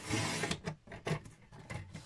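Paper trimmer blade sliding along its rail and slicing through cardstock in one rasping stroke of about half a second, followed by a few light clicks and taps as the paper is handled.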